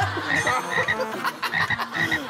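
Frog croaking sound effect: short croaks in quick pairs, repeating every half second or so.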